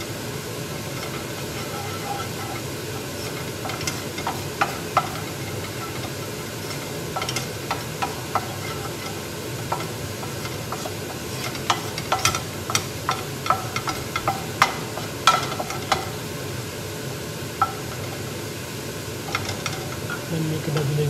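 Wooden spoon stirring and scraping a spice mixture as it dry-roasts toward brown in a frying pan, over a steady hiss. Sharp clicks and taps of the spoon against the pan come in scattered bunches, thickest from about four to sixteen seconds in.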